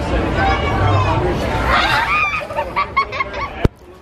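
Children's voices, with loud, wavering, honk-like shouts or laughter over a background of crowd noise. A sharp click comes near the end, and the sound then drops much quieter.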